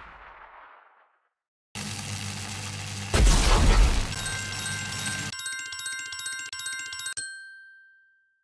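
Casino game sound effects for lightning striking the betting board. A crackling electric rush starts suddenly about two seconds in, with a deep boom a second later. Then comes a run of bright twinkling chimes that ends in one ringing tone.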